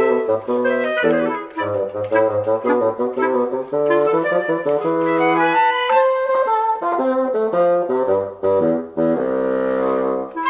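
A wind trio of flute, clarinet and bassoon playing a bouncy tune in quick, short notes, with the bassoon carrying the melody over its low register.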